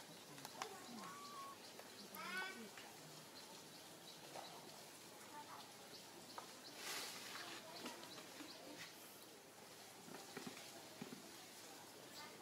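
Faint, short high cries of a baby macaque, the loudest a quick run of rising squeaks about two seconds in, with a brief rustle near the middle.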